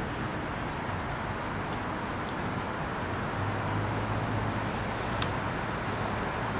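Steady outdoor street background noise with distant traffic. A low hum comes up about halfway through, and a few light clicks end in one sharp click near the end.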